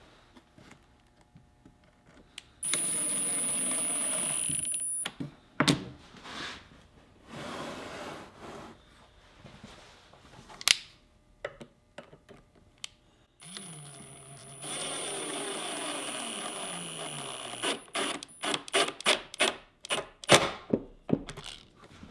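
Milwaukee Fuel impact driver driving screws through the saw fence into a plywood sacrificial fence: a short run of a couple of seconds, then a longer run that rises in pitch as it starts and ends in a quick string of short trigger bursts as the screw is snugged. A few knocks of the driver and wood being handled between the runs.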